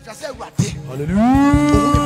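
A man's voice through a PA rises in pitch and then holds one long drawn-out note, a sustained shout or sung syllable, over backing music.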